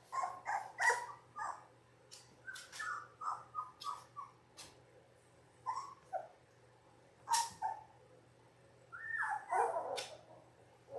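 Young Labrador retriever puppies, 17 days old, whimpering and yipping in a string of short, high squeaks, with a longer falling whine near the end.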